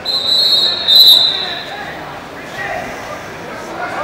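Referee's whistle blown in one shrill blast of about a second and a half, loudest about a second in, signalling the wrestlers to resume from the standing position.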